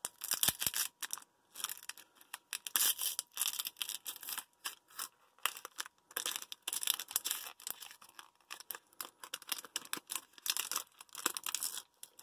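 Foil wrapper of a 2003 Donruss Diamond Kings baseball card pack crinkling and tearing as it is peeled open by hand, a run of irregular crackles and rustles.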